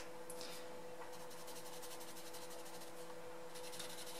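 A pencil rubbing on paper in quick, fine strokes as a small area of a colouring page is shaded in. It is faint, a little stronger near the end.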